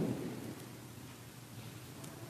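A dull, low thump with a short rumble right at the start that dies away within about half a second, followed by quiet room tone with faint rustling.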